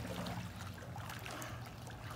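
Soft water splashing and lapping as a small child kicks and paddles in a swimming pool, over a low steady hum.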